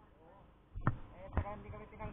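Two dull thumps about half a second apart, with people talking in the background.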